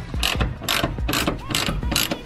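Socket ratchet wrench clicking in quick repeated strokes, about four a second, as the bolts on a fuel pump access plate are worked loose.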